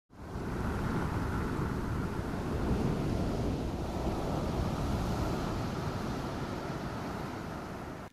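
Ocean surf breaking and washing up a beach: a steady rushing noise that fades in at the start and eases off slightly near the end.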